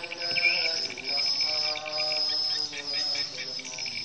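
High-pitched swiftlet twittering in short repeating phrases, about one a second, with steady pitched tones lower down.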